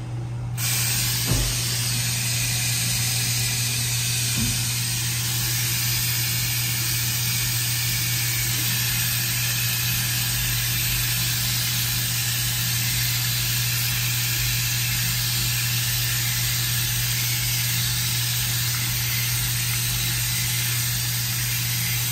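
Bathroom sink faucet running, a strong steady stream of water splashing over a hand into the basin; it comes on suddenly about half a second in. A steady low hum runs underneath.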